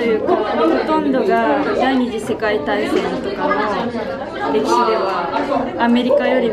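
Speech: a teenage girl talking in Japanese, with other students chattering in the background of a classroom.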